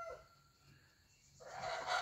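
Chickens in a coop: a hen's drawn-out call trails off at the start, then about a second of near silence, then a soft rustling noise begins.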